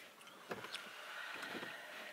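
Faint steady mechanical whirr in a car cabin, starting about half a second in, with a few light clicks.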